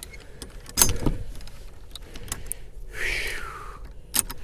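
Metal clinks and rattles of a galvanized steel slide-bolt door latch and its snap hook being unfastened by hand, with a louder clack about a second in and a short scrape near the end.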